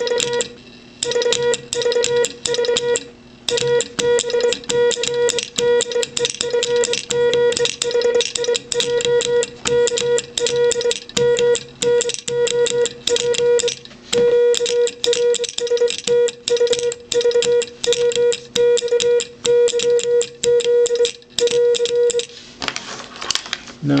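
Morse code sent on a Les Logan Speed-X semi-automatic key ("bug"), its pendulum damper just adjusted: a steady beep keyed on and off in fast, even dots and longer dashes, with sharp clicks from the key's contacts. The beeping stops about two seconds before the end.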